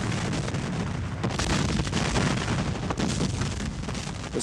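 Sound-effects track of a Civil War artillery barrage: cannon fire and shell explosions in a dense, unbroken din, many shots overlapping.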